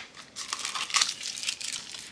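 Clear plastic cellophane wrapping crinkling as it is handled and pulled out of an opened plastic surprise egg, with a sharp click right at the start.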